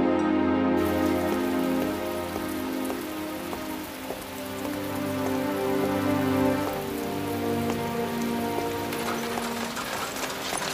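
Steady rain falling, its hiss starting about a second in, over slow background music with long sustained notes.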